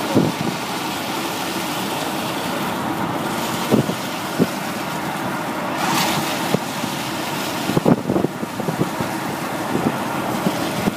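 Steady road and wind noise from a moving car, with wind buffeting the microphone. A few brief knocks come through about four seconds in and again near eight seconds.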